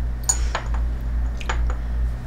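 A few light clinks of a metal spoon against a bowl as salt is stirred into a butter spread, over a steady low hum.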